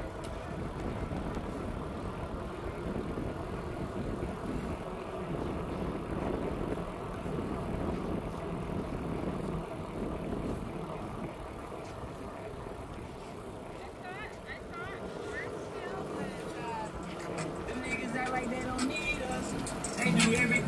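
Indistinct background voices over a steady wash of outdoor noise, with short high chirps in the last few seconds.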